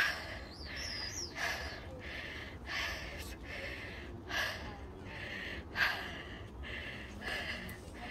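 Birds calling: a short call repeated about every second and a half, with a high gliding whistle near the start.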